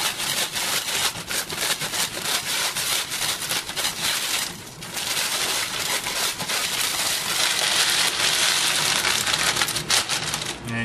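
Potato chips being crushed by hand inside their plastic bag, a dense crunching and crackling with the bag crinkling, breaking the chips down into crumbs. There is a short let-up a little before halfway, then the crushing resumes.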